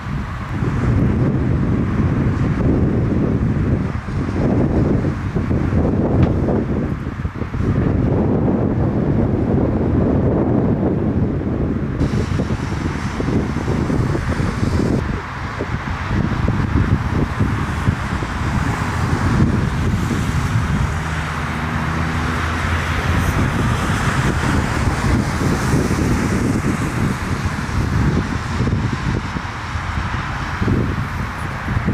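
Boeing 747 jet engine noise, a loud, steady, low-heavy sound with wind buffeting the microphone. About twelve seconds in it changes abruptly to a brighter, hissier jet sound.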